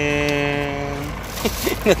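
A man singing or humming a playful tune, holding one long steady note for about a second, then quick sliding vocal sounds.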